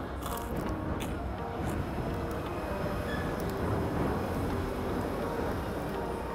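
Quiet background music over a steady hum of ambient noise, with no loud events.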